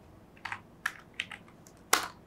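Typing on a computer keyboard: about five separate key clicks, the last and loudest near the end.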